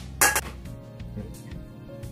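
A utensil scraping and knocking meat sauce out of a wok into a ceramic baking dish: one loud scrape about a quarter second in, then quieter scraping. Background music plays faintly underneath.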